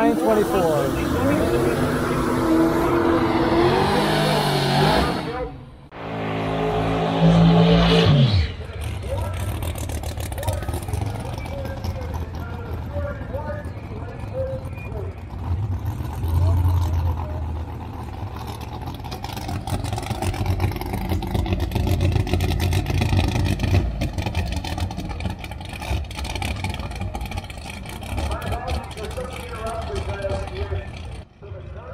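Drag race car engines running hard, changing pitch, in two loud passages during the first eight seconds, the second cutting off suddenly. After that comes a lower steady rumble of engines.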